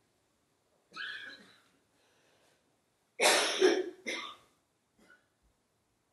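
A person coughing twice, loudly, in a quiet room, after a softer sound about a second in.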